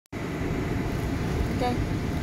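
Steady low rumble of a car, heard from inside its cabin. A brief spoken 'okay' comes near the end.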